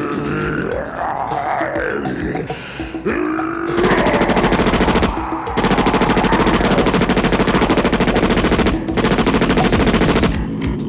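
Film score music with gliding tones. From about four seconds in, rapid sustained automatic gunfire runs over the music, with two short breaks.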